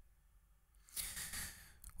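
A man's soft sigh, a short breath out into a close microphone about a second in, followed by a faint mouth click.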